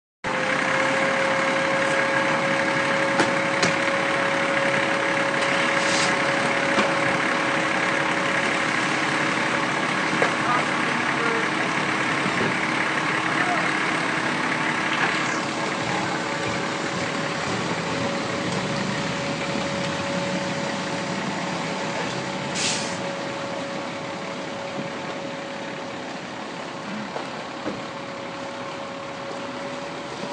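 A steady engine hum holding one pitch, over a rushing noise from a large burning boat, with a few sharp pops; the whole fades a little in the second half.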